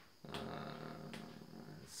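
A man's long, low drawn-out 'uhhh' of hesitation, held at an even pitch for about a second and a half, with a couple of faint clicks over it.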